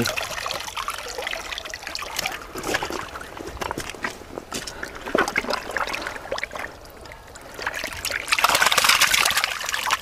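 Water trickling and splashing around a bamboo-framed landing net full of live carp, with many small flicks and slaps as the fish thrash in the mesh. A louder, longer splash comes a little before the end as the net is swished through shallow muddy water.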